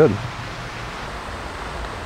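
Steady outdoor background noise, an even hiss with no distinct knocks or clicks; a voice finishes a word at the very start.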